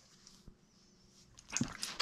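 A young Doberman sniffing and snuffling at a hand in a short noisy burst about a second and a half in, after a mostly quiet start.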